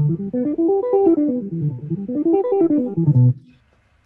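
Electric guitar played fingerstyle with free strokes, the plucking fingers not coming to rest on the next string. It runs a quick arpeggio up and down twice, the last low note dying away about three seconds in.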